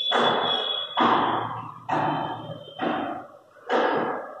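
Regular thuds, a little under one a second, each with a sharp start and a short fading tail. A high, thin squeak of a marker tip on a whiteboard runs through the first second, with a fainter squeak near the end.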